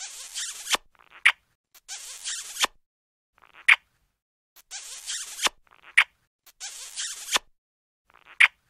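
Cartoon kissing sound effects repeated over and over: a short sharp smack, then a longer hissy smooching sound ending in a click, cycling about every two and a half seconds.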